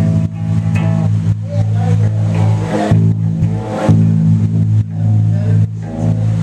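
Rock band playing live: electric guitars and bass holding loud, sustained low chords over drums.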